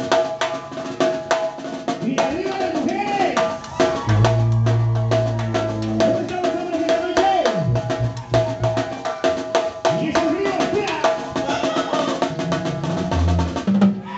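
Live Mexican banda (brass band) playing: fast snare drum and cymbal strokes over tuba bass notes, with a long held note sounding above.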